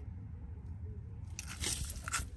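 Gravel crunching under a person shifting and getting up beside a car, starting about two-thirds of the way through, over a low steady background rumble.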